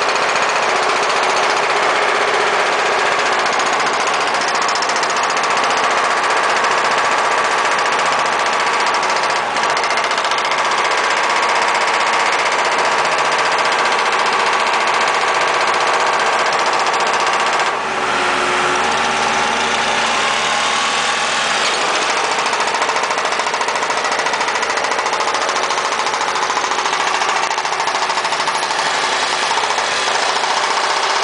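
Backhoe's diesel engine running steadily at close range, dipping briefly in level twice.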